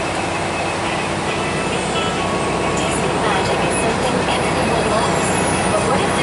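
Steady engine and road noise inside a moving bus, with faint passenger voices in the background from about three seconds in.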